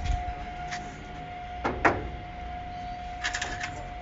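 Clicks and rattles of a key working the lock of a corrugated metal gate, with one sharper clack just under two seconds in and a quick run of clicks near the end.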